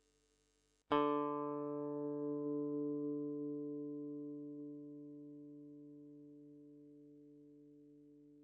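Electric guitar, an Aria MA series fitted with a thick (36 mm) pot-metal Wilkinson WOV04 tremolo block, recorded through its pickups, struck once about a second in and left to ring, dying away slowly. The sustain is the test of the thick block against a thin one.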